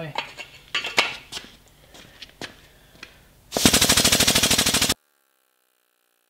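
Hydraulic pump driving a tube bender's ram, starting to bend steel roll-bar tubing: a loud, rapid, even chatter of about fifteen pulses a second that cuts off abruptly after about a second and a half. Before it come a few short knocks and handling noises.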